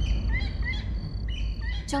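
Forest ambience: birds chirping in short rising chirps, a few in turn, over a steady low rumble.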